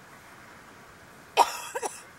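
Low, steady background of gentle surf at the shoreline, then about one and a half seconds in a person gives one short, sharp cough, followed by two smaller catches.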